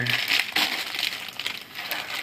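Clear plastic wrapper crinkling and crackling in quick, irregular clicks as hands lift a wrapped gummy candy pizza and set it back down on its cardboard round.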